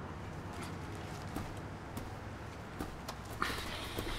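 A few sparse soft knocks and steps over a low steady hum. Near the end comes a burst of rustling and scuffling clothing as one man grapples another from behind.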